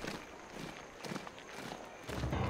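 Faint footsteps of a group of soldiers marching, a few soft steps about half a second apart.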